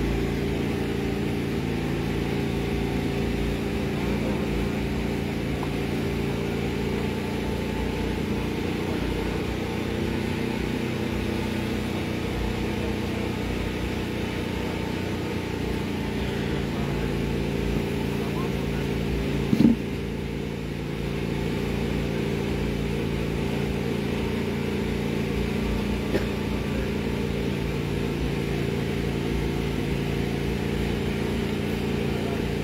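A steady low hum of running machinery with the murmur of voices under it. A single short knock about twenty seconds in.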